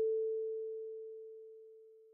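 A single kalimba note, A4, ringing out as one pure tone and fading away steadily.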